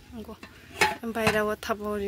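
Aluminium cooking-pot lid clinking once against the pot, a little under a second in, as it is handled.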